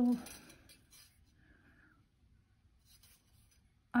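Mostly near silence, with faint scratching of thin copper weaving wire being handled and threaded onto a bent wire frame by hand.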